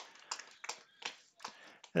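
Faint scattered clicks, about half a dozen short ticks over two seconds, in an otherwise quiet lull.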